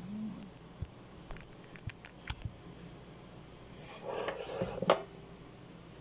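Light kitchen handling noises from hands working a filled tortilla on a grill plate: a few scattered small clicks and taps, then a brief rustling scrape that ends in a sharp knock near the end.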